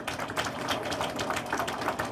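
Audience applause: many quick, irregular handclaps.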